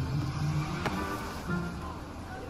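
Background music from the animated show's soundtrack with sustained notes, and a single brief click a little under a second in.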